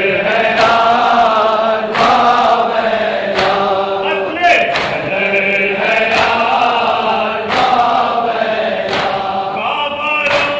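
A group of men chanting a mourning lament (noha) in unison, held notes rising and falling together, with a sharp struck beat keeping time about every second and a half.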